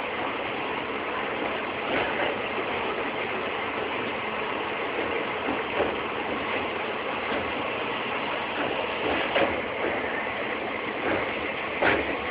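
Passenger train running on its rails, heard from aboard the coach: a steady rattling noise with a few faint, irregularly spaced clanks.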